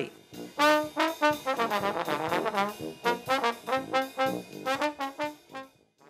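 Trombone playing a phrase of quick, short notes with other brass in a small band, breaking off shortly before the end.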